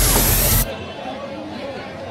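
Music with a rising hiss-like sweep that cuts off abruptly just over half a second in, leaving quieter background chatter.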